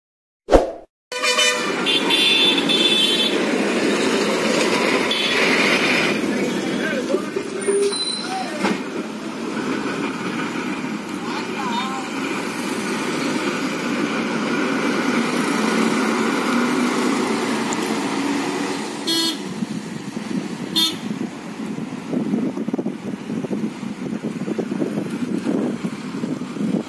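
Road traffic on a hairpin bend: a bus engine running as the bus rounds the curve, with a horn sounding in the first few seconds. A sharp click comes about half a second in.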